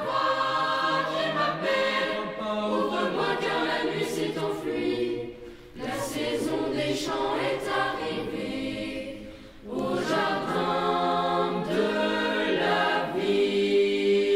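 Boys' choir singing a cappella, in sung phrases with short breaks about five and a half and nine and a half seconds in, ending on a held chord.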